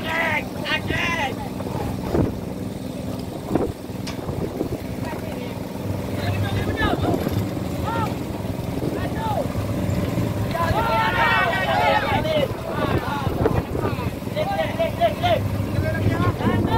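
Fishing boat's engine running with a steady hum, while several crew voices call out over it, busiest about ten to twelve seconds in. A few sharp knocks in the first few seconds come from gear on deck.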